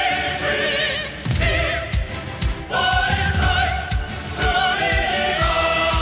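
Symphonic metal band playing live: held choir-like voices with vibrato, joined about a second in by heavy drums and the band.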